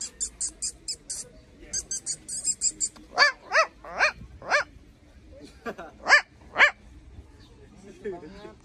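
Yorkshire terrier puppies yipping: a run of quick, very high squeaks over the first few seconds, then four sharp yips in a row around the middle and three more a second or so later.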